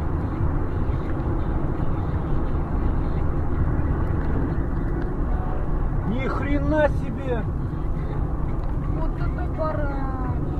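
Steady road and engine noise heard inside a car cabin at highway speed, with a person's voice briefly about six seconds in and again near the end.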